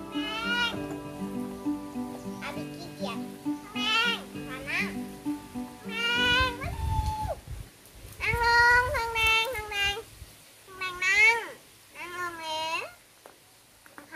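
A pet animal waiting to be fed gives a series of high whining calls that rise and fall, about seven in all, the longest and loudest about eight to nine seconds in.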